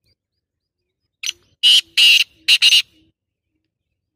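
A francolin (teetar) calling loudly: a short first note, then three loud, harsh notes in quick succession, the whole call lasting about a second and a half.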